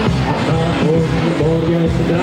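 Live band music played loud and steady, with a trumpet carrying a melody line over bass and drums.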